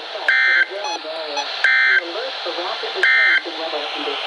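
NOAA Weather Radio EAS SAME header played through a radio receiver's speaker: three short, identical bursts of digital data tones, about a second and a half apart, marking the start of a new alert.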